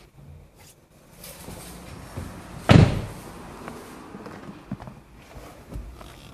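A car door shutting with a single solid thud a little before halfway through, over faint rustling and handling noise.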